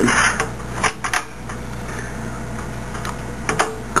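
Clicks and scraping of an expansion card being pushed and rocked into a white PCI slot on a motherboard, the card not seating: a short rustle at the start, then scattered sharp clicks around a second in and again near the end.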